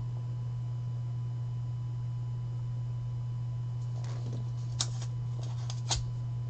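A steady low electrical hum with a thin higher tone running under it, and, about four to six seconds in, a few light clicks and rustles of hands handling cards and a plastic card holder on the table.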